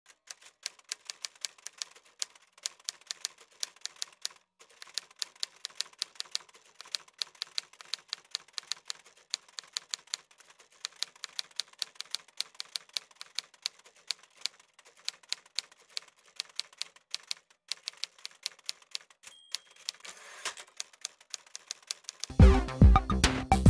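Typewriter key-strike sound effect: a fast run of sharp clicks, about five a second, with a few short pauses, keeping time with text being typed out letter by letter.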